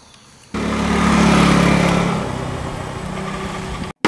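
A motor vehicle engine running, starting abruptly about half a second in, loudest soon after and then easing off, with a steady low hum.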